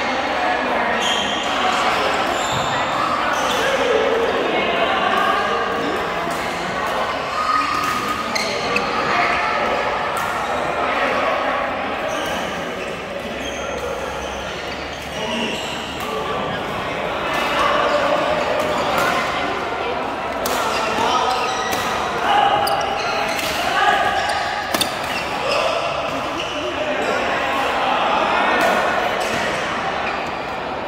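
Badminton rackets striking shuttlecocks: sharp smacks at irregular intervals, ringing in a large echoing hall, over the steady chatter of players' voices.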